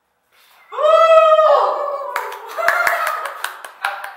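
Silence, then a high-pitched vocal cheer held briefly and falling off about a second in, followed from about two seconds in by scattered hand clapping mixed with voices.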